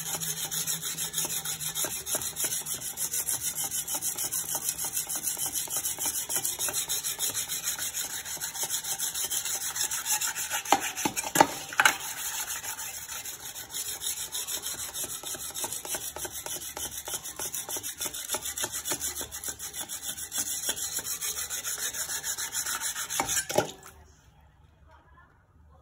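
A whetstone is rubbed rapidly back and forth by hand along the wet blade of a Chinese cleaver, making a steady, rhythmic scraping grind. A couple of sharper clicks come about halfway through, and the strokes stop just before the end.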